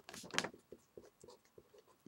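Handwriting: a few short scratching strokes of a pen, loudest in the first half second, then faint light ticks as writing continues.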